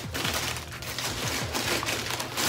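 Tissue paper and wrapping rustling and crinkling as a sneaker is pulled out of its box, a run of irregular quick crackles.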